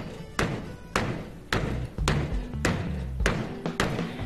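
Fist striking a wall-mounted Wing Chun punching bag in an even rhythm, about two punches a second, each a short thud. This is the steady working tempo taught for the straight punch. Background music plays underneath.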